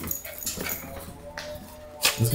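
A small dog making faint, thin whines, with a few soft clicks.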